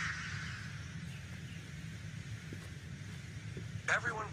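A steam hiss that fades away over the first two seconds, with a low steady hum underneath.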